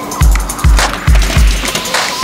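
Background music with a beat of deep bass kicks, four in these two seconds, over steady synth tones and light high percussion.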